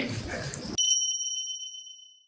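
A single bright bell-like ding sound effect, cutting in about three-quarters of a second in over otherwise dead silence and ringing away over about a second and a half. Before it, the noise of a busy hall.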